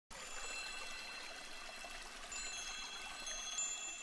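Soft chimes ringing: several high, clear tones that hold and overlap, with a new cluster coming in about halfway through and dying away near the end.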